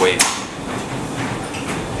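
Gym room noise with metal weights clanking, two sharp clanks at the very start and fainter knocks after.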